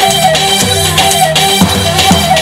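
Live Kurdish halay dance music: davul bass drums beat a steady, quick dance rhythm under a kaval flute melody that trills and turns around one held pitch.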